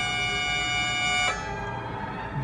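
Mills Violano-Virtuoso, a coin-operated mechanical violin-and-piano machine, holding a sustained chord, its violin strings bowed steadily by the machine. The chord cuts off just over a second in, leaving a fainter fading remainder.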